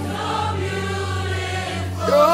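Gospel worship music: a choir holding soft, sustained voices over a steady low note, without a clear lead vocal.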